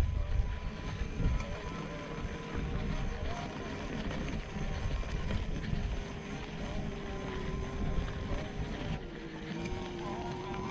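Gotway MSX 100V electric unicycle's hub motor whining steadily as it works under load up a steep dirt hill, the pitch dipping slightly near the end, over a low rumble.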